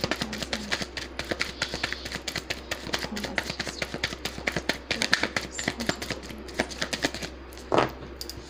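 Rapid, irregular tapping clicks, several a second, that die away near the end, followed by one short, louder noise.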